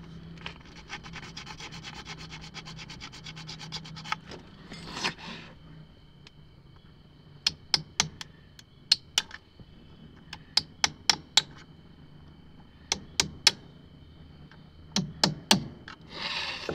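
Rapid scraping of a metal tool inside a CPVC elbow fitting for the first four seconds, as the broken pipe stub is worked out of the socket. From about seven seconds in come sharp taps in groups of two or three as a hammer strikes the tool driven into the fitting.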